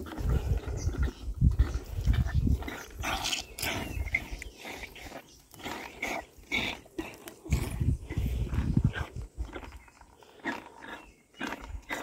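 Rhino calf slurping milk from a bucket: irregular wet slurps and sucks coming on and off.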